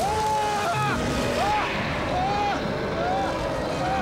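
Film soundtrack of a giant gorilla attack: a dense, rumbling roar under a run of short, high cries that each rise and fall.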